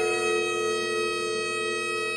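Bagpipes playing a slow tune, holding one long note over the steady drone.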